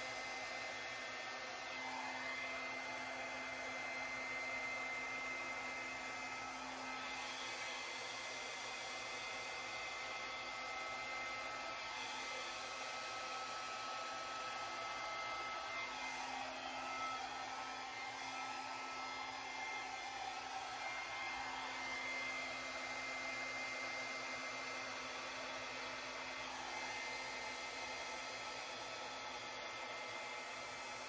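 Handheld hair dryer running steadily, blowing air with a thin high whine from its motor.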